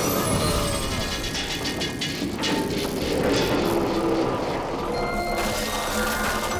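Background cartoon music over a steady mechanical rumble and clatter of large clockwork gears: the repaired carillon's machinery starting to run. A run of rapid clicks comes about a second and a half in.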